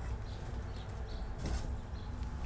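Faint rustling of angel moss being pressed by hand into a wire birdcage, with a slightly louder rustle about one and a half seconds in, over a low steady rumble.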